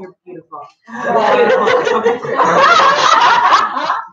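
A group of people bursting into loud, high-pitched laughter about a second in, which lasts until just before the end.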